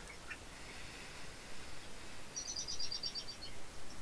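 A small bird singing a quick trill of about ten short, high notes lasting about a second, starting a little past halfway.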